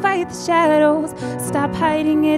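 A young woman singing a slow ballad solo into a handheld microphone, accompanied on piano; her held notes waver with a light vibrato.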